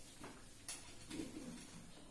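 A bird's faint, low cooing call about a second in, with a couple of faint clicks before it.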